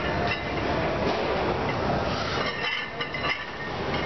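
Steady loud din of a busy weight room, with a few light knocks about a second apart early on.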